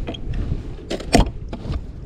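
A few sharp clicks about a second in from a bass boat's recessed deck-hatch latch being turned and the hatch opened, over a low steady hiss of wind and water.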